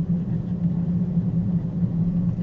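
Steady low-pitched background hum with no change across the pause.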